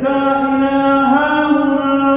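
A man's solo voice chanting a Gospel reading in Byzantine chant, eighth tone, holding one long sung note that steps up slightly in pitch about a second in.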